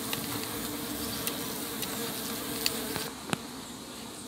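A colony of Melipona stingless bees buzzing steadily over the exposed comb of an opened hive, a continuous hum that cuts off about three seconds in. A single sharp click follows.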